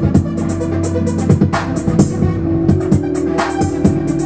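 Slow R&B/hip-hop instrumental played on a keyboard synthesizer over a programmed drum beat, with sustained brass-patch chords. A cymbal-like crash comes about one and a half seconds in and again near the end.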